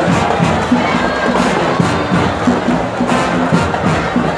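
Marching band playing, with brass over a steady beat of drums, while a crowd cheers.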